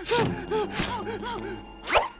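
A cartoon character's voice in rapid repeated chattering syllables that fade out, broken by two short breathy gasps, then a quick rising whoosh sound effect at the very end.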